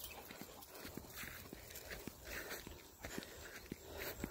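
Faint footsteps through grass, heard as a scatter of light, uneven ticks and rustles over a low hiss.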